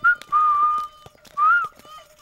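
Whistled tune: a clear, held note, then shorter notes that rise and fall.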